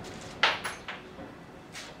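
Machined aluminium parts knocking and clicking against each other and the workbench as they are handled: one sharp knock about half a second in, then a few softer clicks.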